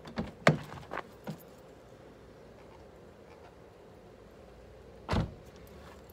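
Handling knocks at a car door during hand polishing: a quick cluster of sharp clicks and taps in the first second or so, then one heavier thump about five seconds in.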